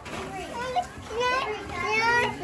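A young child's high-pitched wordless vocalizing, rising in pitch in the second half.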